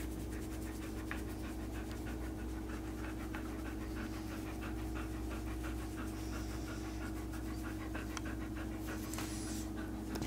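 Siberian husky panting steadily with quick, even breaths.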